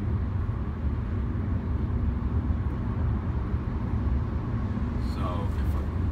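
Steady road and tyre rumble with engine drone inside the cabin of a 2017 Toyota Corolla cruising at highway speed.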